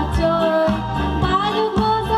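A girl singing a devotional song into a microphone, accompanied by a Yamaha electronic keyboard playing chords and a repeating bass rhythm.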